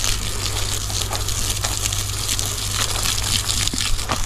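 Water from a garden hose spraying onto plants: a steady rushing hiss.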